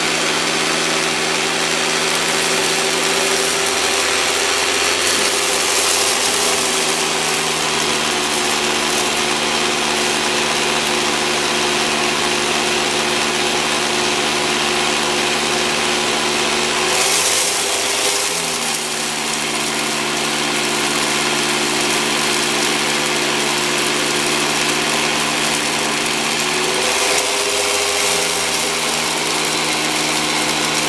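Sweep n Groom vacuum cleaner running steadily, a motor hum over a hiss of air, its pitch sagging and recovering briefly three times.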